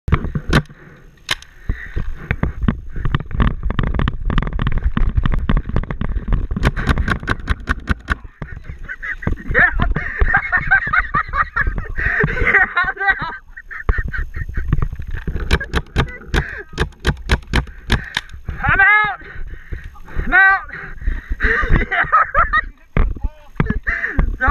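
Paintball markers firing: scattered single shots and two quick strings of several shots, one a third of the way in and one just past the middle, over a low rumble of movement.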